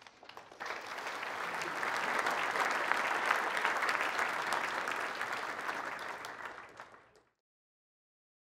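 Audience applauding: the clapping builds up, then dies away and is cut off suddenly near the end.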